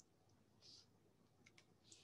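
Near silence: room tone, with a faint short hiss under a second in and a few faint computer mouse clicks near the end.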